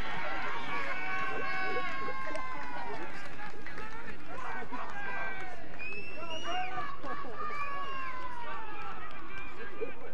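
Several voices from an Australian rules football crowd and players shouting and calling out over one another, many of them long drawn-out calls, over steady outdoor background noise.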